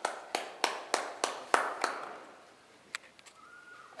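Hand clapping, steady at about three claps a second, stopping a little before halfway; a single click follows about a second later.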